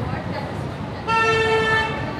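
A vehicle horn sounding one steady honk, just under a second long, about a second in, over a constant murmur of crowd chatter and traffic.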